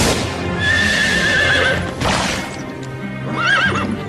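A horse whinnying twice, one long wavering call and a shorter one near the end, over dramatic music, with crashes of thunder at the start and again about two seconds in.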